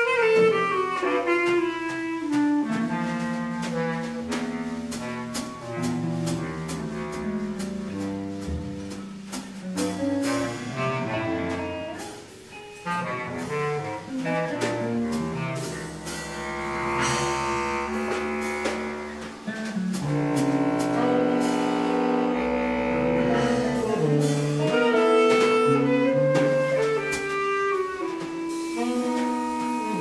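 Free-improvised jazz from a live quartet: bass clarinet and saxophone playing shifting, overlapping lines over electric guitar and a drum kit struck in scattered, irregular hits. The music thins out briefly near the middle, then builds again.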